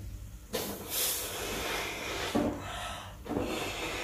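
A latex balloon being blown up by mouth: two long breaths hiss into it, the first about half a second in and the second starting a little after three seconds, with a short quick breath in between.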